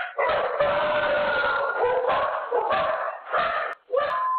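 A dog barking in alarm at an earthquake tremor, heard through thin home-camera audio with the highs cut off.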